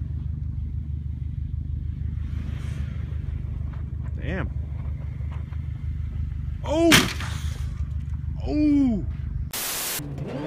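A car's engine drones low and steady as it slides around on snow. A person whoops three times, short rising-and-falling calls, the loudest about seven seconds in. A short burst of hiss comes at the very end.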